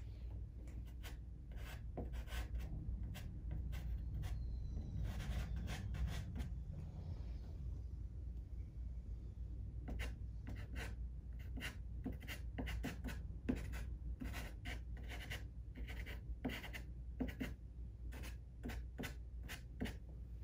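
A soft pastel stick dragged on its side across paper in short, irregular strokes, a dry scratchy rubbing. The strokes come sparsely at first and several a second from about halfway, over a steady low hum.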